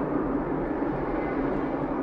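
Steady engine and road noise of a small car, heard from inside the cabin while driving.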